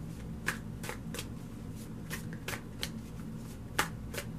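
A tarot deck being shuffled by hand: a string of separate, crisp card snaps about two a second, with the loudest near the end.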